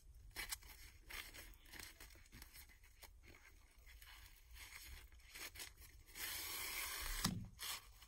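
Hand-sewing grosgrain ribbon with needle and thread: faint rustling of the ribbon and small clicks, then about six seconds in a scratchy pull lasting about a second as the thread is drawn through the ribbon, followed by a soft bump.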